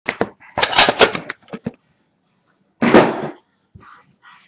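Round metal trading-card tin being opened and handled: the lid scrapes and clicks, with two louder noisy bursts, one about half a second in and one near three seconds.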